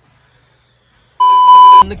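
Near silence, then a little over a second in a single loud, steady electronic bleep tone lasting about half a second that cuts off abruptly: a censor-style bleep laid in by the edit.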